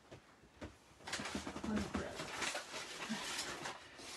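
Crackly rustling of something being handled, starting about a second in and continuing.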